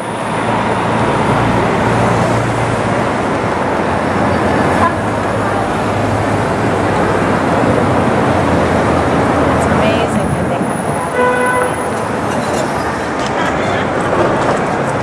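Busy city street traffic: a steady wash of vehicle noise with voices of passers-by, and a vehicle horn sounding once for about a second near the end.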